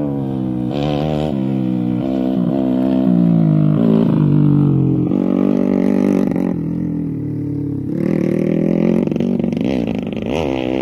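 Modified underbone (bebek) grasstrack motorcycle with a Gordon's Racing aftermarket exhaust, ridden hard: the engine pitch climbs and drops back again and again as the throttle opens and the gears change, easing for a moment past the middle before climbing again.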